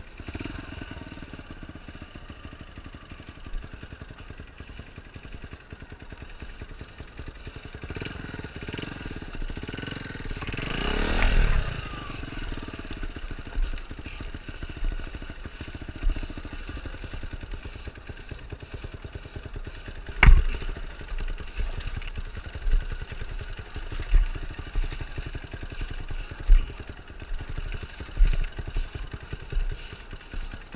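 Dirt bike engine running under varying throttle on a rough trail. The engine note swells up and falls back once near the middle. A sharp knock comes about two-thirds of the way through, followed by a series of thumps toward the end.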